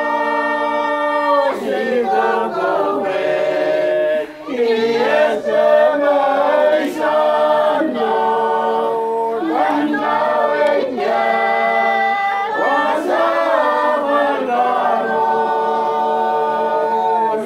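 A group of voices singing a hymn together without accompaniment, holding long notes that change every second or two.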